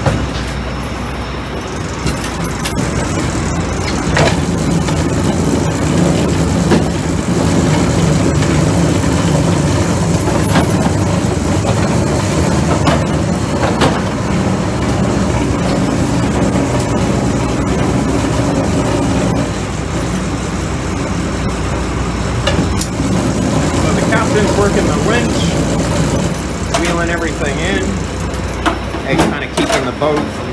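Lobster boat's engine running steadily, with scattered knocks and clatter of gear at the sorting bench and indistinct crew voices that grow clearer near the end.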